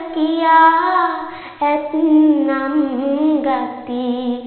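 A girl singing Sinhala kavi verses in traditional chant style, one voice drawing out long held notes that waver and curl in pitch, with a brief breath about one and a half seconds in.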